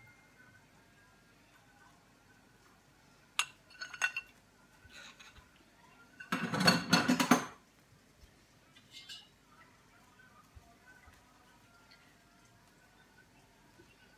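Kitchenware being handled on a counter: a few sharp clinks, then a louder clatter lasting about a second, then a few light clinks, with quiet between.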